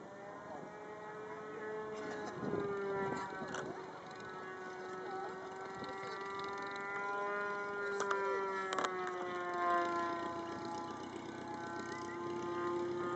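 Vintage single-engine biplane's piston engine running at low revs while taxiing, a steady droning hum. Its pitch rises slightly after a couple of seconds and eases down again near the end, with a few short clicks about two-thirds of the way through.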